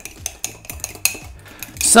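Metal spoon stirring chocolate cake batter in a ceramic mug, with quick irregular clinks and scrapes against the mug's sides as the batter is mixed until smooth.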